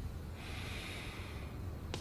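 A person breathing out through the nose: a soft hiss lasting about a second, over a low steady room hum. A short click comes just before the end.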